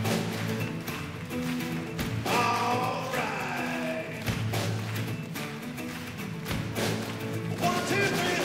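Live band playing an upbeat instrumental passage on acoustic guitar, drum kit and tuba, the tuba carrying a steady bass line under scattered drum hits.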